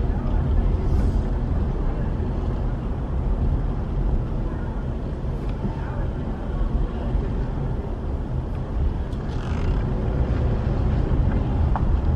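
Steady low rumble of a car driving slowly: engine and road noise.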